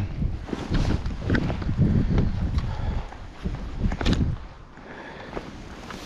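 Footsteps on grass and the handling knocks of fly-fishing gear, with wind buffeting the microphone in low gusts. The gusts and knocks die down about four and a half seconds in.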